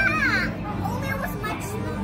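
A child's high-pitched excited shout right at the start, then the chatter of people and children in a busy room.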